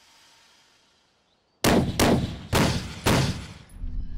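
About a second and a half of near silence, then four loud gunshots in quick succession, each followed by an echoing tail.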